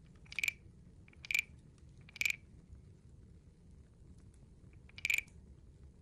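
Large wooden frog guiro with a stick scraped along its ridged back, making short croaking rasps: three about a second apart, then one more after a pause near the end.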